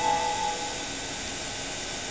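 The last held note of a station public-address chime rings and dies away about half a second in, leaving a steady hiss of background noise.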